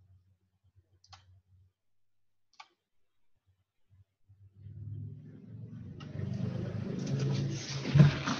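Two computer mouse clicks about a second and a half apart over a faint low hum, then, through the second half, a low humming noise with a hiss over it that grows steadily louder, coming over the video call.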